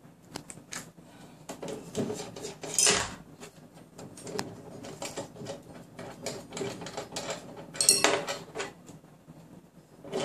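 Small metal clinks, knocks and rattles as bolts and steel mounting brackets are worked loose and lifted off the back of a wireless antenna, with two louder, brief clatters about three seconds in and again near eight seconds.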